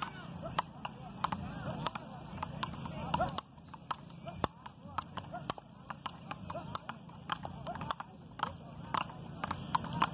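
Frescobol rally: paddles striking a small rubber ball back and forth, an irregular run of sharp knocks coming about every half second to second, over background voices.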